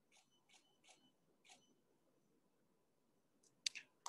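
Near silence broken by four faint camera shutter clicks in the first second and a half, followed by a few louder sharp clicks near the end.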